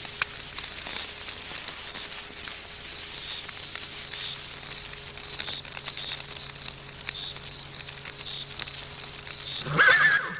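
Night-time insects chirping in short calls that repeat about every half-second, over a low steady hum and a few faint clicks: a night ambience laid under the narration.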